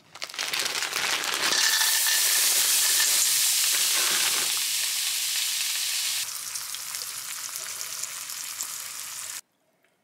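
Fat sizzling in a non-stick frying pan, then diced pyttipanna (potato and meat hash) frying in it. The sizzle drops in level about six seconds in and cuts off suddenly just before the end.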